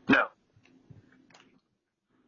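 A man shouting a single short "No" through a video doorbell's speaker, followed by faint low scuffling noises.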